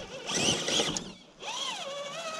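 Radio-controlled rock crawler truck's electric motor and gearing working as it climbs: a rough scrabbling burst in the first second, then a wavering whine that rises and falls with the throttle.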